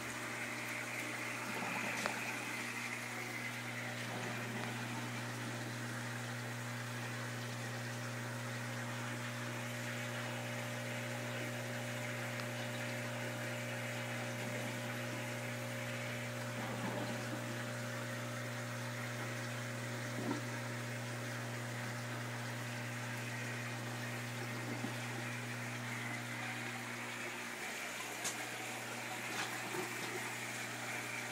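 Aquarium sponge filter bubbling steadily, over the steady low hum of the air pump that drives it.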